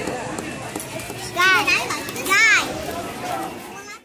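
Children's chatter and shouting from a crowd, with two loud, high-pitched child calls about a second and a half and two and a half seconds in; the sound cuts off abruptly at the end.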